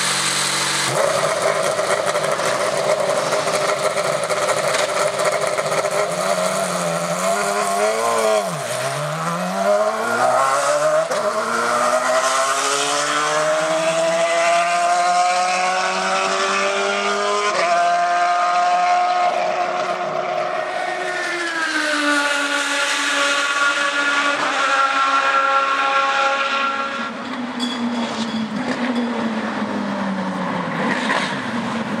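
Indy car engine running in the pit, then the car pulls away about eight seconds in, its engine note dipping and then climbing steadily in pitch as it accelerates away, with a few sharp steps in pitch later on.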